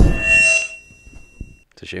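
A loud thump as papers are slapped down onto a tabletop in a mic-drop gesture. A thin metallic ringing follows and fades out over about a second and a half.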